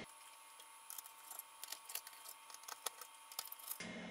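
Faint, scattered small clicks and light metallic rattles from hand work on a Commodore 64 board with metal RF shielding.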